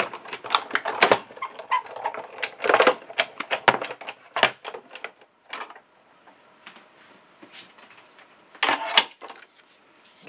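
Sizzix Big Shot die-cutting machine being hand-cranked, the cutting plates with a die and cardstock passing through the rollers with a quick run of clicks and knocks. A few loud clacks near the end as the plates and cut card are handled.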